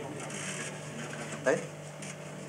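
Low, steady electrical hum with faint hiss from the stage amplification, under quiet murmuring and one short spoken "Hey?" near the end.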